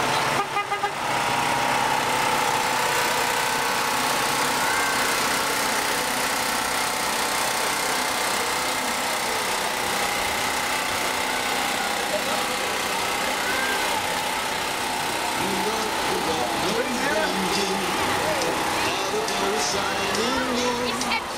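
Semi truck pulling a lit flatbed parade float past at close range, its engine running steadily under a constant roar of road noise. Voices of riders and onlookers call out over it in the last few seconds.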